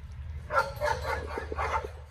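Several four-week-old Cane Corso puppies crying and yipping over one another, starting about half a second in.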